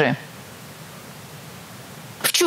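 A woman's speech ends at the very start, then a steady, even hiss of background noise fills the gap until speech resumes.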